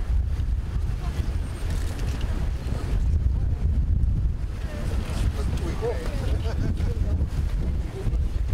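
Wind buffeting the microphone as a steady low rumble, with faint voices talking in the background, clearest a little past halfway.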